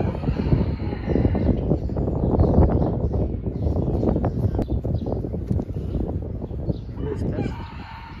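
A rooster crowing, faint under a loud low rumble that runs throughout, once at the start and again near the end.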